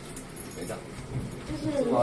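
People's voices in an elevator cab: a short spoken word near the end, with faint rustling and scuffing before it.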